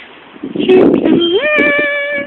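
A woman's unaccompanied singing voice: after a short rough rustle, it slides upward from a low note into a long held higher note about a second and a half in.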